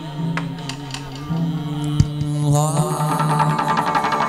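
Hát văn ritual music: a low held sung chant with a few sharp percussion strokes, then a rising melodic line about two and a half seconds in, after which the ensemble plays fuller and denser.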